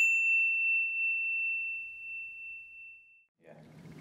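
A single bright bell-like ding, struck once just before the start, ringing out as one clear tone and fading away over about three seconds.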